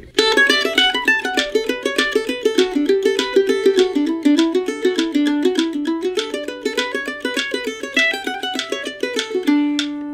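Apitius Vanguard F5 mandolin playing a fast fiddle tune in quick, even single picked notes, ending on a held note near the end. A metronome clicks only on the backbeats, beats two and four.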